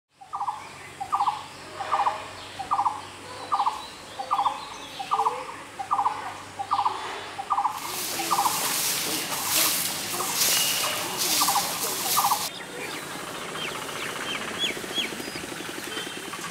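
A bird calling over and over, a short rattling note repeated about every 0.8 seconds. From about eight seconds in, stiff grass brooms sweep dry leaves in swishing strokes for about five seconds, and faint higher chirps follow.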